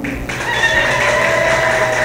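Audience noise in a hall with one long, high-pitched held call that starts a moment after the speech stops, rises slightly and then falls away.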